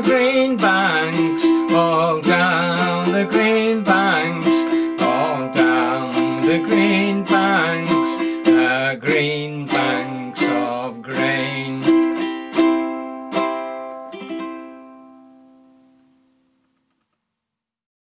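Ukulele strummed in a steady rhythm at the close of a song. The strums slow to a few spaced last chords, and the final chord rings out and fades away about sixteen seconds in.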